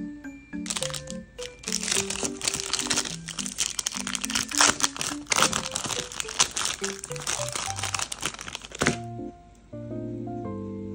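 Foil and paper wrapper of a chocolate bar crinkling and crackling as it is torn and peeled open, starting about half a second in and stopping about a second before the end. A soft background tune with a simple melody plays under it.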